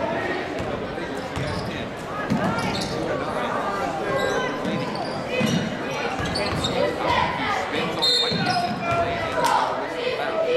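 Basketball dribbled on a hardwood gym floor, a few separate bounces, over the chatter of spectators echoing in a large gym.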